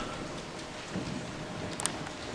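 Steady room noise with a soft bump about a second in and a few short clicks near the end.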